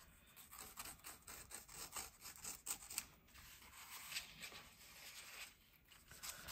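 Faint, irregular scratching and rustling of thin paper as a pocket knife blade is worked along the seams of a vintage envelope to split it apart.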